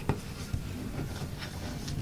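Origami paper being folded and creased by hand against a tabletop: soft paper rustling with a couple of short crisp clicks near the start.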